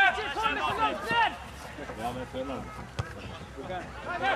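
Men's voices shouting calls across an outdoor football pitch during play, loudest in the first second and a half, with a single sharp knock about three seconds in.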